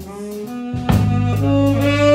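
Live blues-soul band playing a slow ballad between sung lines: electric bass, drums and guitar under held saxophone notes. The band thins out at first, then a drum hit just before a second in brings it back to full level.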